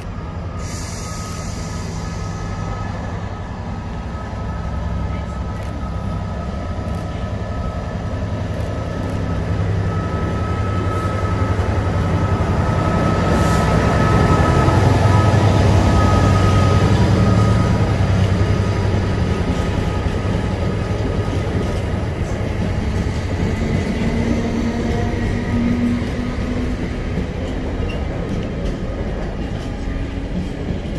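GB Railfreight Class 66 diesel locomotive, with its EMD two-stroke V12 engine, growing louder as it approaches and passes close by about halfway through, with a thin steady whine above the engine. Then loaded container flat wagons rumble and clatter past on the rails.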